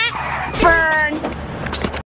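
A person's voice makes one drawn-out sound about half a second in, over a steady low rumble.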